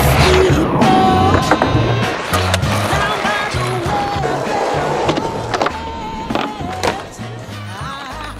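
Skateboard on concrete: wheels rolling and several sharp clacks of the board being popped and landed in flatground tricks, under a music track with a pulsing bass line.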